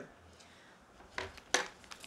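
Two short light knocks on a wooden tabletop, about a third of a second apart, as a marker pen is set down.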